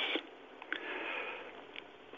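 A soft breath drawn in through the nose near a talk-show microphone, lasting about a second.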